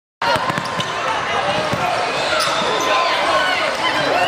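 Basketball game sound in a gym: a ball bouncing on the court among many overlapping, indistinct voices. The sound drops out completely for a moment at the very start.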